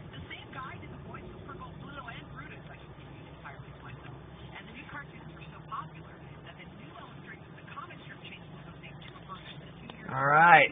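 Steady low hum of a car heard from inside the cabin: engine and road noise, with faint voices in the background.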